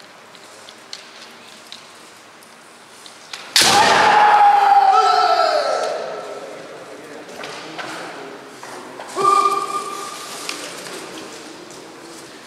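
A kendo player's long kiai shout with a shinai strike about three and a half seconds in, the voice sliding down in pitch over about two seconds. A second, shorter shout comes about nine seconds in.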